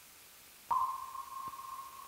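A single sonar-style ping: one steady mid-pitched tone that starts sharply under a second in and fades away over about a second and a half, over faint hiss.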